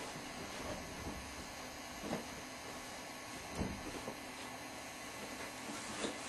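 Quiet, steady background hiss of a small room, with two faint soft knocks about two seconds and three and a half seconds in.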